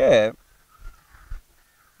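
A man's speaking voice trails off at the end of a phrase. A pause follows, with faint bird calls in the background.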